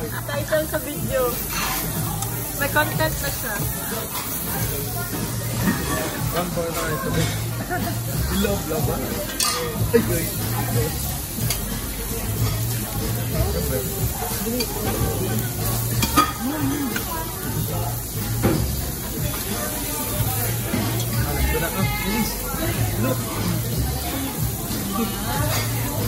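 Food sizzling steadily on a tabletop grill, under background music with a steady low beat and quiet chatter.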